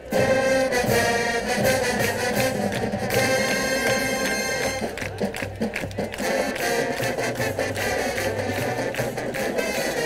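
High school marching band playing its field show: brass, drumline and front-ensemble percussion come in loud all at once, with steady drum hits under the horns. A bright held brass chord stands out a few seconds in.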